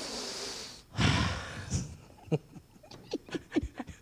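A man miming a drag on a cigarette into a handheld microphone: a drawn-in breath, then a louder breath blown out, followed by a few faint mouth clicks.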